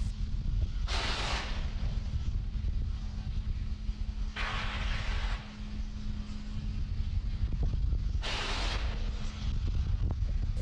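Launch-pad audio of a fuelled Falcon 9: a steady low rumble and hum, broken three times by a hiss of venting gas lasting half a second to a second each.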